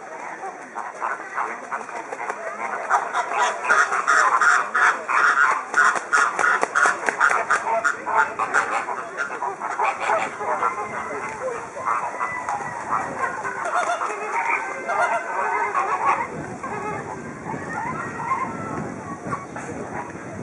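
A flock of flamingos honking and gabbling, a dense chorus of short, rapid goose-like calls that is busiest a few seconds in and thins to a looser babble in the second half.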